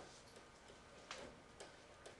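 Near silence with a few faint ticks and taps of a stylus writing on a tablet screen, the clearest about a second in.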